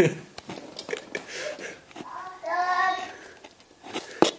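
A child's voice holding a drawn-out, sung vowel for about a second, starting about two seconds in, with a few light clicks and taps around it.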